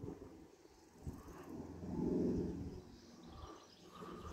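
Aircraft passing high overhead: a faint low drone that swells about two seconds in and then fades.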